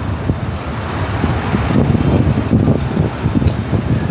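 Steady low rumble of wind on the microphone mixed with outdoor traffic noise.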